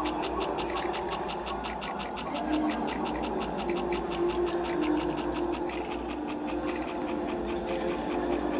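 Rapid, even mechanical ticking, about seven ticks a second, over a steady low hum and long held tones, as a film soundtrack.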